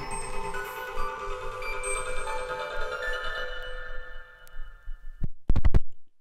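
Electronic techno track playing from a vinyl record: layered, sustained synth tones that thin out over the last seconds and cut off abruptly about five seconds in. A few loud thumps from the stylus follow near the end as the record is stopped and the tonearm lifted.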